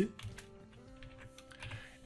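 Computer keyboard being typed on, a series of light key clicks as code is entered in an editor.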